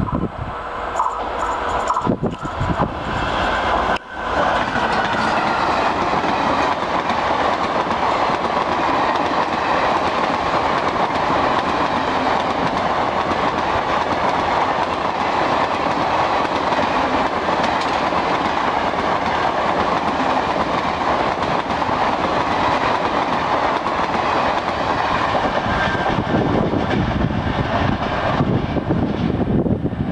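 Indian Railways WCAM1 electric locomotive and its 24-coach express running through at speed. The train noise builds over the first few seconds and jumps sharply as the locomotive passes, about four seconds in. It then settles into a long, steady rush of wheels on rail with clickety-clack as the coaches go by, easing only near the end.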